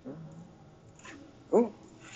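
A man's short exclaimed "oh" about one and a half seconds in, over quiet room tone, with a brief low murmur at the start.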